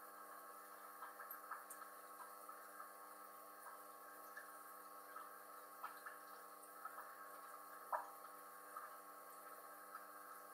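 Faint, steady hum of aquarium equipment, with small scattered drips of water, the loudest about eight seconds in.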